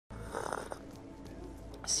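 A man's short, heavy exhaling sigh about half a second in, over faint background music.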